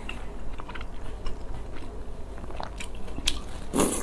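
Close-miked mouth sounds of chewing spicy fire noodles: small wet clicks and smacks, then near the end a short loud slurp as a mouthful of noodles is drawn in.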